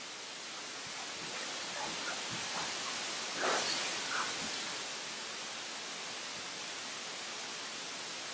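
Steady hiss of background noise, with a slight brief rise about three and a half seconds in.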